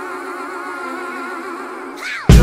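Hip-hop track intro: slow, wavering vocal harmonies held as sustained notes, with no drums or bass.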